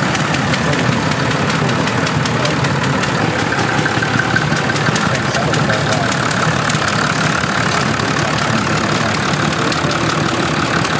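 Vintage Fordson tractor engine idling steadily, with a fast, even firing beat.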